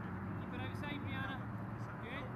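Shouted voices of players and spectators at a youth soccer game, high-pitched calls in short bursts about half a second to a second and a half in, over a steady low hum.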